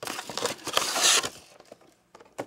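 Cardboard scraping and rustling as a boxed action figure is slid out of its cardboard shipping box, loudest about a second in and dying away soon after.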